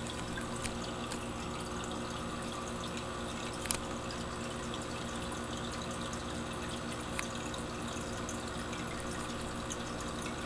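Aquarium filter running: a steady trickle of water over a constant low electrical hum. Three short clicks sound about a second in, near the middle (the loudest) and about three seconds later.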